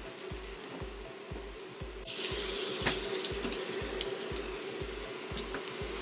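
A pot of vegetables, barley and tomatoes sizzling, over faint background music with a steady low beat. The sizzle comes in suddenly about two seconds in and holds steady.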